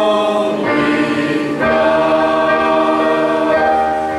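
A congregation singing a hymn together, holding long notes that change pitch about every second.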